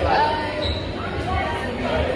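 Background voices of people talking in a busy restaurant over the steady low thumping beat of background music.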